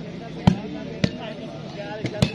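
A volleyball being struck by hand twice in a rally: two sharp slaps about half a second apart, the first louder, over a steady murmur of crowd voices.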